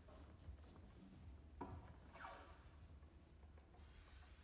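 Near silence: concert hall room tone with a few faint, sparse sounds, one a short falling glide a little after two seconds in.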